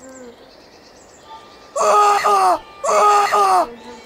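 A voice doing the dragon's cries: two drawn-out groaning calls, each under a second and falling in pitch at the end, about a second apart.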